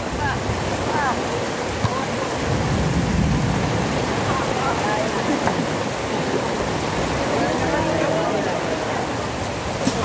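Heavy rain falling steadily, an even hiss of rain on the ground and surroundings.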